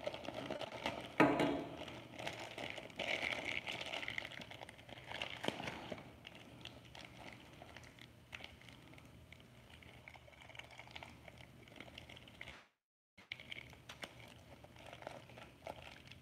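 Thin clear plastic packaging crinkling and rustling as it is handled and pulled off a toy spinning top. The sound is busiest in the first few seconds and fainter and sparser after that. It cuts out completely for a moment about three-quarters of the way through.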